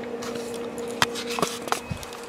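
Camera being handled: a few sharp clicks and some rustling over a steady low hum from the bench equipment.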